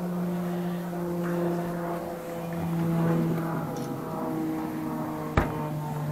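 A steady droning hum from a running engine or motor, holding one pitch with its overtones, with a single sharp knock near the end.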